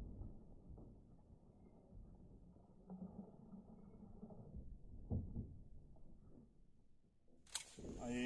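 Faint, muffled low rumble of slowed-down audio with a few soft thuds. Near the end a sharp click, after which full, clear outdoor sound returns.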